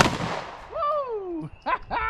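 A single pistol shot, its report dying away within about half a second. After it a man gives a long whoop that falls in pitch, then a short laugh.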